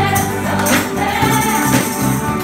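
Live gospel worship music: a choir singing with a band including electric guitar, while handheld ribbon tambourines are shaken and struck, their jingles cutting in sharply a few times.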